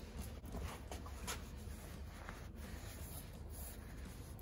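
Faint rustling and scratchy rubbing of a cloth shop rag being wiped over an engine's crankshaft snout, cleaning it before the new crank gear goes on. A few light handling ticks and a low steady hum sit underneath.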